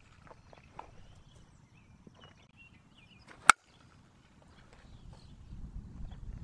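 A softball bat striking a tossed softball: one sharp crack about three and a half seconds in, over a faint outdoor background.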